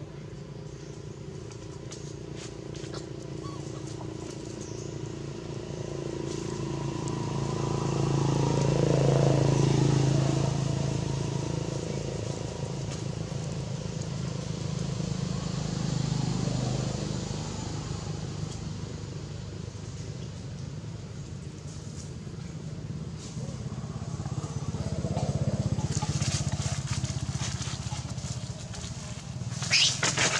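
Low engine hum of passing motor vehicles, swelling and fading three times as each one goes by. A short crackling burst comes right at the end.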